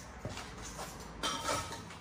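Light knocks and clinks of metal parts and tools being handled during brake work, a few scattered ones with a busier cluster a little past a second in.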